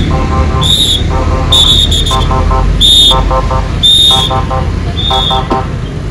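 An electronic alarm repeating about once a second: a short high-pitched beep followed by a quick run of lower chirping pulses, sounding over the low, steady rumble of motorcycle and traffic engines.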